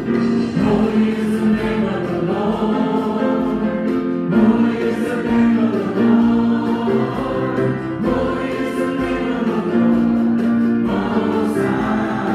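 Church worship team and congregation singing a worship song together, many voices holding long notes over band accompaniment.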